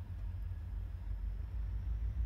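Low, steady rumble of an approaching diesel freight train, still out of sight, growing louder toward the end.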